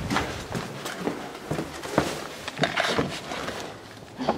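Footsteps on a stone floor inside a small brick room, about two steps a second.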